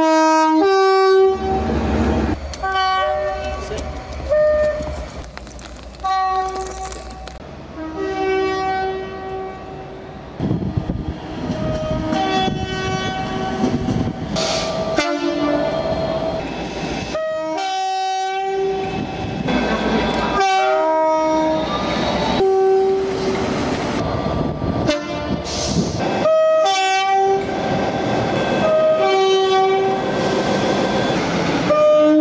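Two-tone horns of British locomotives sounding again and again in short blasts, high note and low note alternating, clip after clip with abrupt cuts between them. A low diesel engine rumble runs under the first several seconds.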